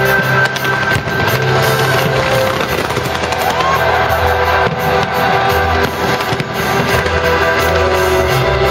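Fireworks going off in quick succession with repeated bangs and crackles, over loud music played through stadium loudspeakers.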